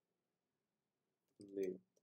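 A few faint computer keyboard keystrokes as a word is typed, in an otherwise quiet room, followed by one spoken word near the end.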